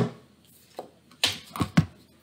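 Tarot cards and deck handled in the hands and against a table: a faint tap about a second in, then three sharp clicks in quick succession near the end.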